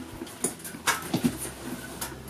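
Padded guitar gig bag being handled and unzipped: a few separate clicks and rustles from the zipper and bag.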